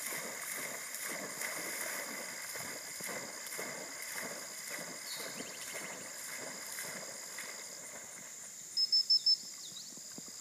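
Black Labrador retriever puppy swimming, its paddling strokes making a steady rhythm of soft splashes that fade as it swims away. Near the end, four short high pips sound in quick succession.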